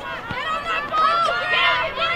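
Several high-pitched voices shouting and calling over one another on a rugby sevens field, louder from about a second in, with a brief low thud near the start.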